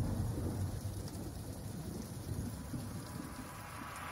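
A low, thunder-like rumble with a haze of rain-like noise opening a song. It fades slowly, then begins to swell again near the end, building toward the music's entry.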